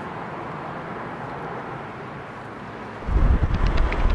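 Steady outdoor city background noise. About three seconds in, a loud low rumble of wind buffeting the microphone cuts in.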